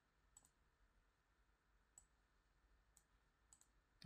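Near silence with a handful of faint computer-mouse clicks scattered through it.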